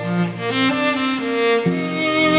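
Background music of bowed strings, violin and cello, playing slow held notes that change pitch about two-thirds of a second in and again near the end.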